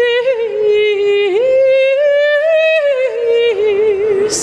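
A woman singing long operatic notes with vibrato and no words. About a second in, the voice breaks sharply upward to a higher held note, then falls back and wavers with vibrato near the end.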